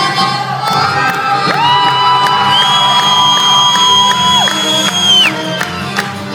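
A live folk dance band plays with fiddles and accordion, and the crowd cheers. From about a second and a half in, two long, high, held cries rise over the music, one above the other, and break off shortly before the end. Sharp rhythmic beats follow.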